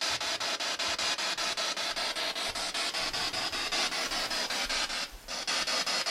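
Spirit box sweeping through radio stations: a steady hiss of static chopped into short pieces several times a second, with a brief drop about five seconds in.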